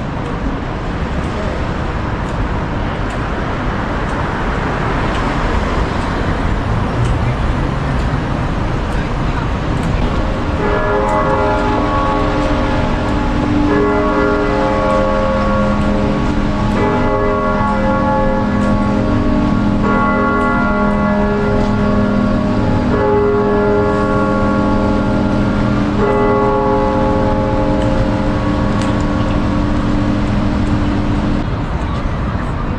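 Street traffic, then from about a third of the way in a large clock-tower bell striking over and over, about one stroke every three seconds, each stroke ringing on into the next.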